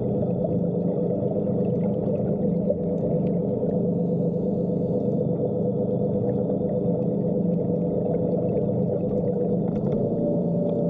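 Underwater diver propulsion scooter running steadily: a constant motor and propeller hum with a few held tones, heard underwater.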